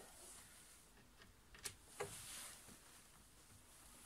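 Near silence broken by two faint clicks about halfway through: a hand screwdriver turning a self-tapping screw through a hood seal's metal strip.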